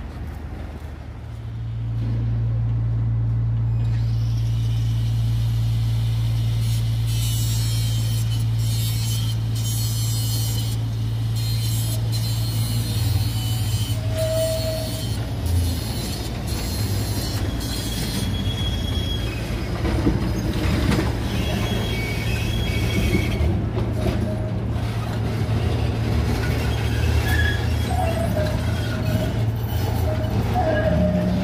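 71-623 (KTM-23) low-floor tram running close by, with a steady low hum from its electrical equipment and the clicking and rattling of its wheels on the track. Short squeals come near the end as it takes a curve.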